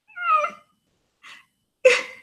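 A woman's short, high whimper lasting about half a second, then a sharp burst of breathy laughter just before the end.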